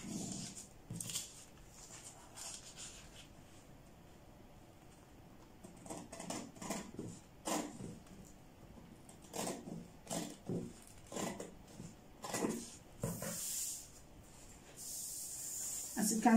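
Scissors cutting stiff brown pattern paper: a quiet start, then a run of irregular snips through the middle, and a soft paper rustle near the end.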